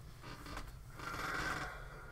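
A man's quiet in-breath, drawn for about half a second about a second in, with a few faint mouth clicks before it.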